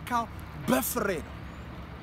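A man speaking Amharic in two short phrases, over a steady low background rumble.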